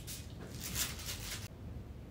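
Mini perfume bottle's atomizer spraying onto a paper scent strip: a faint hiss that fades out about a second and a half in.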